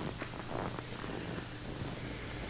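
Soft rustling and handling noise as the pages of a large altar book are turned, picked up close by the priest's microphone, over a steady low hum from the sound system.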